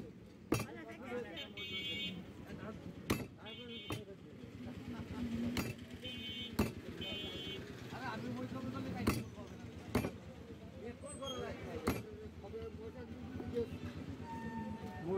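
Butcher's cleaver chopping meat and bone on a wooden log chopping block: single sharp chops, one every second or two.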